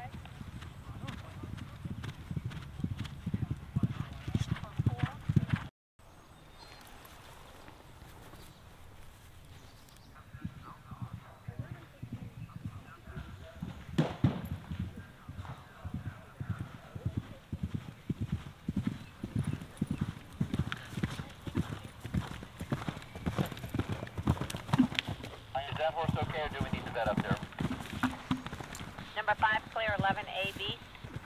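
Hoofbeats of a horse galloping over turf, a fast run of dull thuds that breaks off suddenly about six seconds in. From about ten seconds in, another galloping horse's hoofbeats build and carry on.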